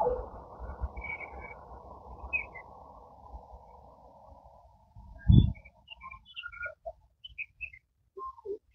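Running noise of a departing passenger train fading away over the first four and a half seconds, with a single loud low thump about five seconds in. Birds chirp in short high calls throughout, more often after the train sound has died away.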